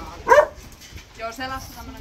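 A dog barks once, loudly, about a third of a second in.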